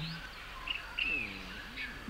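Faint birdsong chirps in a cartoon's forest ambience, with a short low voiced sound about a second in.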